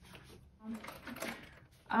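Soft rustling and scraping as a phone is pushed down into a leather handbag's compartment and handled. It starts about half a second in and lasts about a second.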